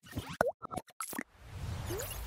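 Animated logo-intro sound effects: a quick string of short pops and clicks, one sliding up in pitch, followed near the end by a swelling whoosh.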